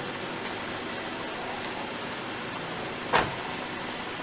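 Car engine idling steadily, with one loud thump about three seconds in.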